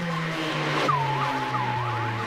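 Breakbeat/dubstep track playing in a vinyl DJ mix, with a bass line stepping downward. About a second in, a high squealing sound sweeps down and holds, its pitch wobbling rapidly up and down above the beat.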